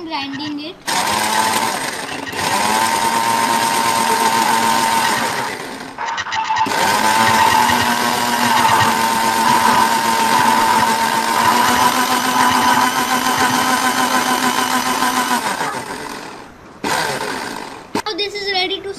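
Philips mixer grinder running loud and steady with its steel jar loaded, in two runs with a short stop about six seconds in.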